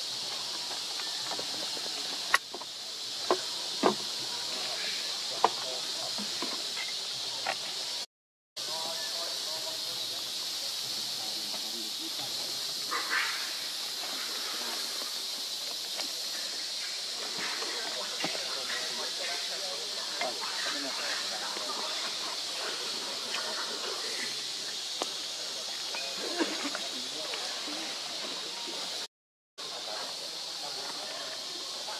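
Steady high-pitched hiss of a forest insect chorus, with a few sharp clicks in the first few seconds and faint distant voices. The sound drops out to silence briefly twice, about eight seconds in and near the end.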